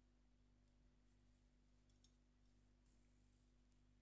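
Near silence: room tone with a faint steady hum and two brief soft clicks about halfway through.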